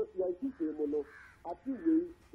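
A man's voice talking over a telephone line, thin-sounding with little high end.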